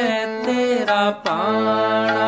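Harmonium playing a shabad melody in held reedy notes, with a voice singing along and gliding between pitches; the sound drops out briefly a little over a second in, then a new held note starts.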